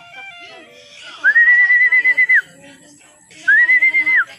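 Two long whistled notes, each about a second, gliding up into a steady high tone with a slight waver and dropping off at the end, the second near the end. A person whistling, the way a fancier whistles to call a circling racing pigeon down to the loft.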